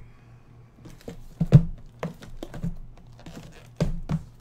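Shrink-wrapped trading card boxes being handled and shuffled on a tabletop: irregular taps and knocks. The loudest comes about a second and a half in, with another strong one near the end.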